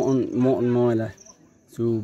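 A man speaking in a language other than English, breaking off for about half a second in the middle, with insects trilling faintly and high in the background.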